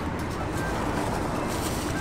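Steady, even rumble of road traffic.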